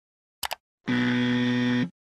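Animation sound effects: two quick clicks as the cursor hits the share button, then a buzzer tone lasting about a second, like a 'wrong' buzzer.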